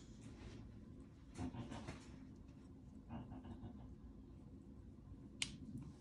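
Faint rustling as curly hair and a clip-in extension weft are handled, then a single sharp click near the end as the extension's snap clip is pressed shut.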